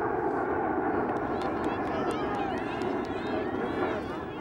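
Indistinct voices of children and onlookers on an open playing field: a steady blur of distant chatter with many short high-pitched calls and shouts over it, and a few faint clicks.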